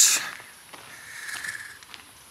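A man's voice ending the word 'dus' in a hiss, then quiet outdoor ambience with a few faint ticks and a soft hiss about a second in, as he walks along a park path.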